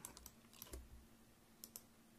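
Near silence with a few faint clicks from computer input at a desk, the last two close together near the end.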